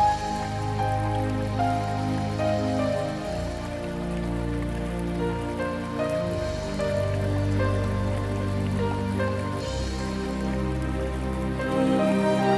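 Slow instrumental music from the band: held chords over a deep bass line whose notes change every two or three seconds, with no singing.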